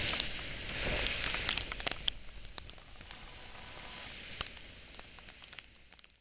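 Heavy rain on a car, heard from inside: a steady hiss with scattered sharp ticks of drops striking the glass and body, growing fainter over the second half.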